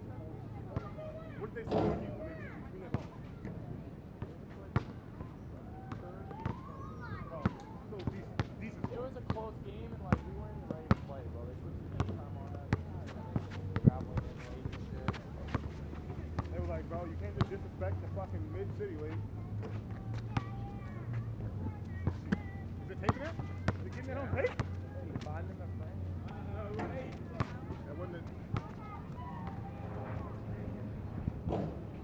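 Basketball bouncing on an asphalt court: a string of sharp bounces scattered through, coming about once a second in the middle stretch as the ball is dribbled.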